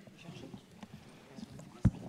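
Quiet room murmur in a council chamber, then a single sharp, loud thump near the end, picked up close on a gooseneck conference microphone.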